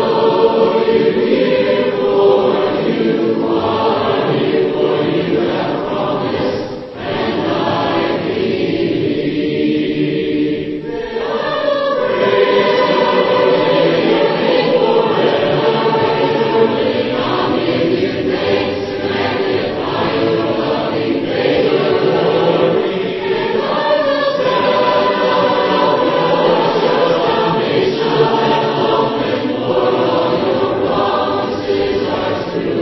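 A choir of voices singing a hymn together, going into a faster chorus partway through.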